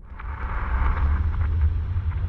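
A transition sound effect: a deep rumble that starts suddenly and swells for about a second and a half, with crackling hiss above it, then begins to fade.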